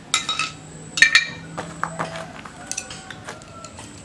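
Metal bicycle parts clinking and knocking as they are handled during assembly: a group of sharp clinks at the start, another about a second in, then lighter scattered clicks.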